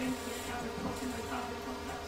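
A steady buzzing hum, with faint voices under it.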